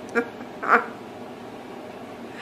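A woman laughing, two short bursts within the first second.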